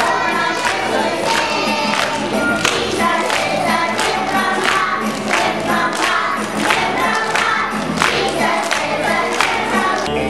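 A group of young children singing a song together, clapping their hands along in a steady rhythm.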